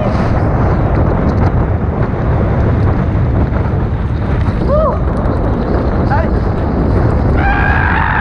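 Loud, steady wind buffeting on the microphone during a mountain-bike ride on a forest trail. Brief voices call out about five seconds in and again near the end.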